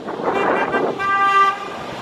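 A vehicle driving past on the street, followed about a second in by one steady car-horn honk lasting about half a second.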